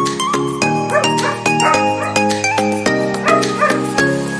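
Background music with a steady run of notes, over which a young long-coat German Shepherd barks a few short times about a second in and again just past three seconds.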